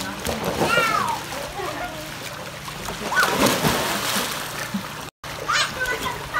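A splash in a swimming pool as a child tumbles off a floating inflatable air-track mat into the water, about three seconds in and lasting a second or so. Children's shouts are heard around it.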